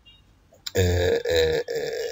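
A man's voice: two short syllables about two-thirds of a second in, then a drawn-out held vowel, a hesitation sound in mid-sentence.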